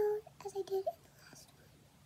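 A young girl's voice speaking briefly and softly, a few short murmured sounds in the first second.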